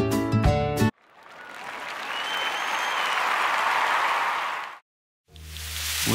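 Acoustic guitar music cuts off about a second in. Applause then fades in, with a faint whistle over it, and stops suddenly. After a short silence new music begins near the end.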